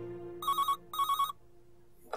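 Desk landline telephone ringing for an incoming call: two short trilling electronic rings about half a second apart.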